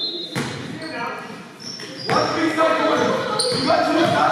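Basketball game sounds in a gym: a ball bouncing on the hardwood floor, short high sneaker squeaks, and players' and spectators' voices, all echoing in the hall.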